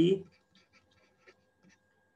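Faint, scattered light taps and scratches of a stylus writing on a tablet screen, following the last syllable of a spoken word.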